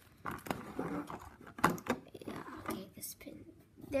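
Clear plastic blister packaging handled and crinkled as a pin is worked out of its tray, with irregular short crackles and clicks, the sharpest about one and a half seconds in.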